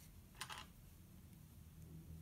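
Near silence: room tone, with one brief soft rustle about half a second in, the kind made by handling yarn and crocheted fabric.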